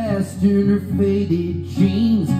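Acoustic guitar playing a picked and strummed song accompaniment, amplified live through a PA, with the tail of a sung phrase right at the start.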